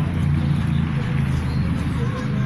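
A motor vehicle engine running, a steady low hum.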